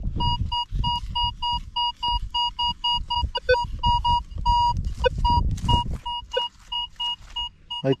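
Metal detector signalling a target: a repeated short high beep, about four a second, with one longer beep midway. The signal marks a buried metal target that could be something interesting or trash. A low rumble runs underneath.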